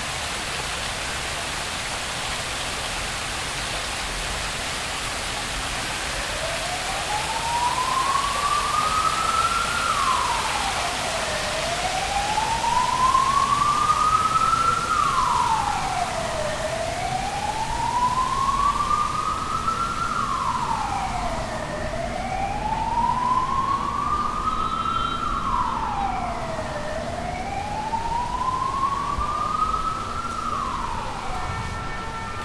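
Emergency vehicle siren wailing, starting about six seconds in: each cycle rises slowly in pitch, then drops quickly, repeating about every five seconds over a steady hiss.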